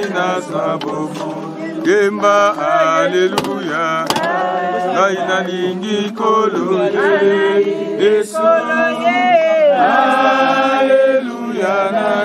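A group of mourners singing a hymn together, several voices in chorus, carrying on steadily.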